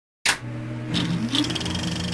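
Opening intro sound effect: a sharp hit, then a steady low hum with a pitch that rises about a second in, with a couple more hits.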